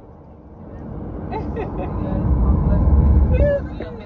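Road and wind rumble in a moving car, swelling to a loud, deep rumble and dropping off sharply about three and a half seconds in, with voices in the background.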